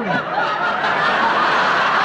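Studio audience laughing: a sustained wave of many voices together.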